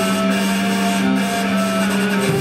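Live drone-based folk music: a steady low drone note held unbroken under a reedy melody that steps from note to note.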